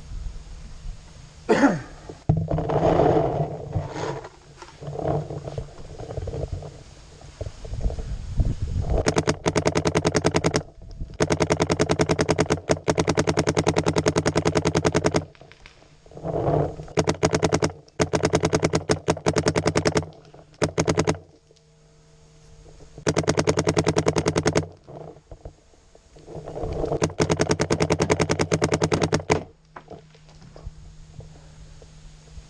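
Paintball marker firing in long rapid strings of shots, many per second, in repeated bursts with short pauses between them. Scuffling knocks come before the first burst.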